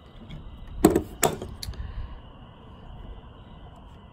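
Two short clicks from handling the parts of a field-stripped Smith & Wesson M&P 2.0 pistol, about a second in and close together, then only a faint steady background.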